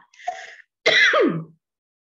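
A woman clearing her throat: a short breathy rasp, then a louder voiced throat-clear about a second in whose pitch falls steeply.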